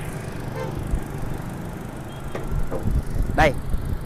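Toyota Innova engine idling with a low, steady hum, heard with the bonnet open, and a light knock about a second in.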